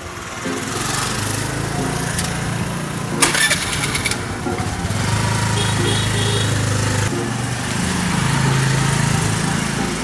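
A small motor scooter engine running steadily, then pulling away, with a brief clatter about three seconds in.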